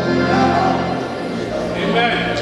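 Gospel worship song: voices singing with instrumental accompaniment under them, steady low notes held beneath the melody.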